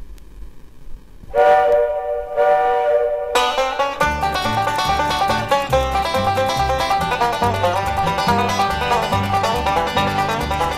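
Bluegrass instrumental intro: after a moment of faint hiss, a held chord like a train whistle sounds for about two seconds, then from about four seconds in a fast rolling five-string banjo leads over acoustic guitar and bass notes.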